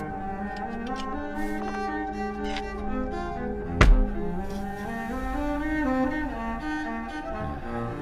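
Cello playing a slow melody of changing bowed notes. About halfway through comes a single heavy thud, a block of clay set down on a wooden stand.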